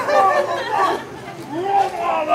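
Speech only: people talking over one another in indistinct chatter.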